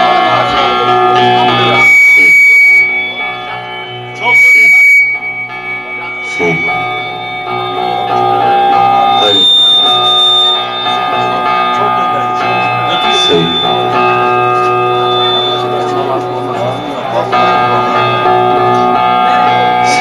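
Live amplified folk music played on a long-necked electric saz and keyboard, with sustained notes and plucked strings. Two short, very loud bursts break in about two and four and a half seconds in.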